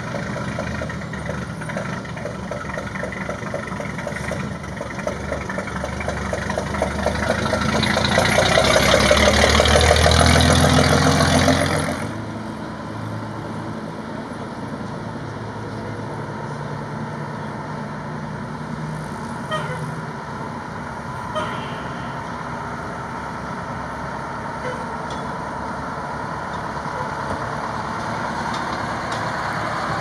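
Fire truck engines running as the trucks drive slowly by. The first few seconds have a rapid, even chugging. It grows louder from about seven seconds in and cuts off sharply at twelve, and a steadier engine sound follows.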